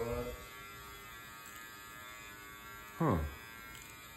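Steady electric buzz of a small appliance motor, an even hum of many stacked tones. A short spoken "huh?" cuts in about three seconds in.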